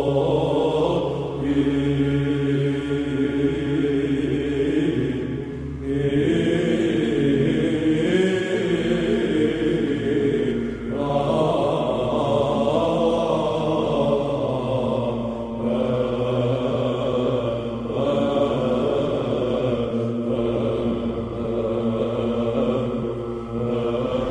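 Background music of slow, sustained choral chanting, its held chords shifting every few seconds.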